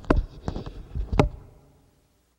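A handful of knocks and low thumps of handling noise, the loudest about a second in, dying away near the end.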